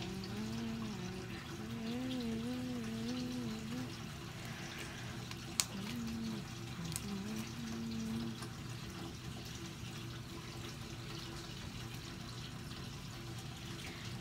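A girl humming a wavering tune in short phrases, for about four seconds, then again for a couple of seconds midway, over a steady background hiss; a single sharp click comes just before the second stretch of humming.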